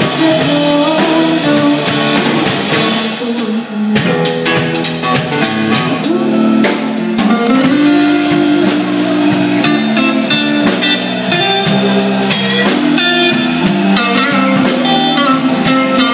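Live band playing loudly with two electric guitars and a drum kit, an instrumental stretch with guitar lines over a steady beat.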